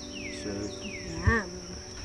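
Steady high-pitched drone of insects, with a bird repeating a falling whistle about every half second to second over it.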